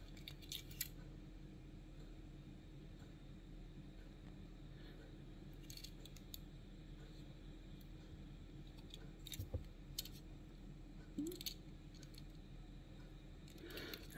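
Faint, scattered clicks and light taps of a small metal-and-plastic die-cast toy truck being turned over in the fingers, over a low steady hum.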